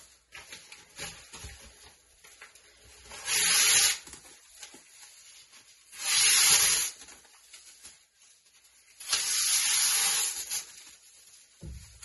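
Newspaper being torn into strips by hand: three long rips, about three, six and nine seconds in, the last lasting about two seconds. Light paper rustling comes between them.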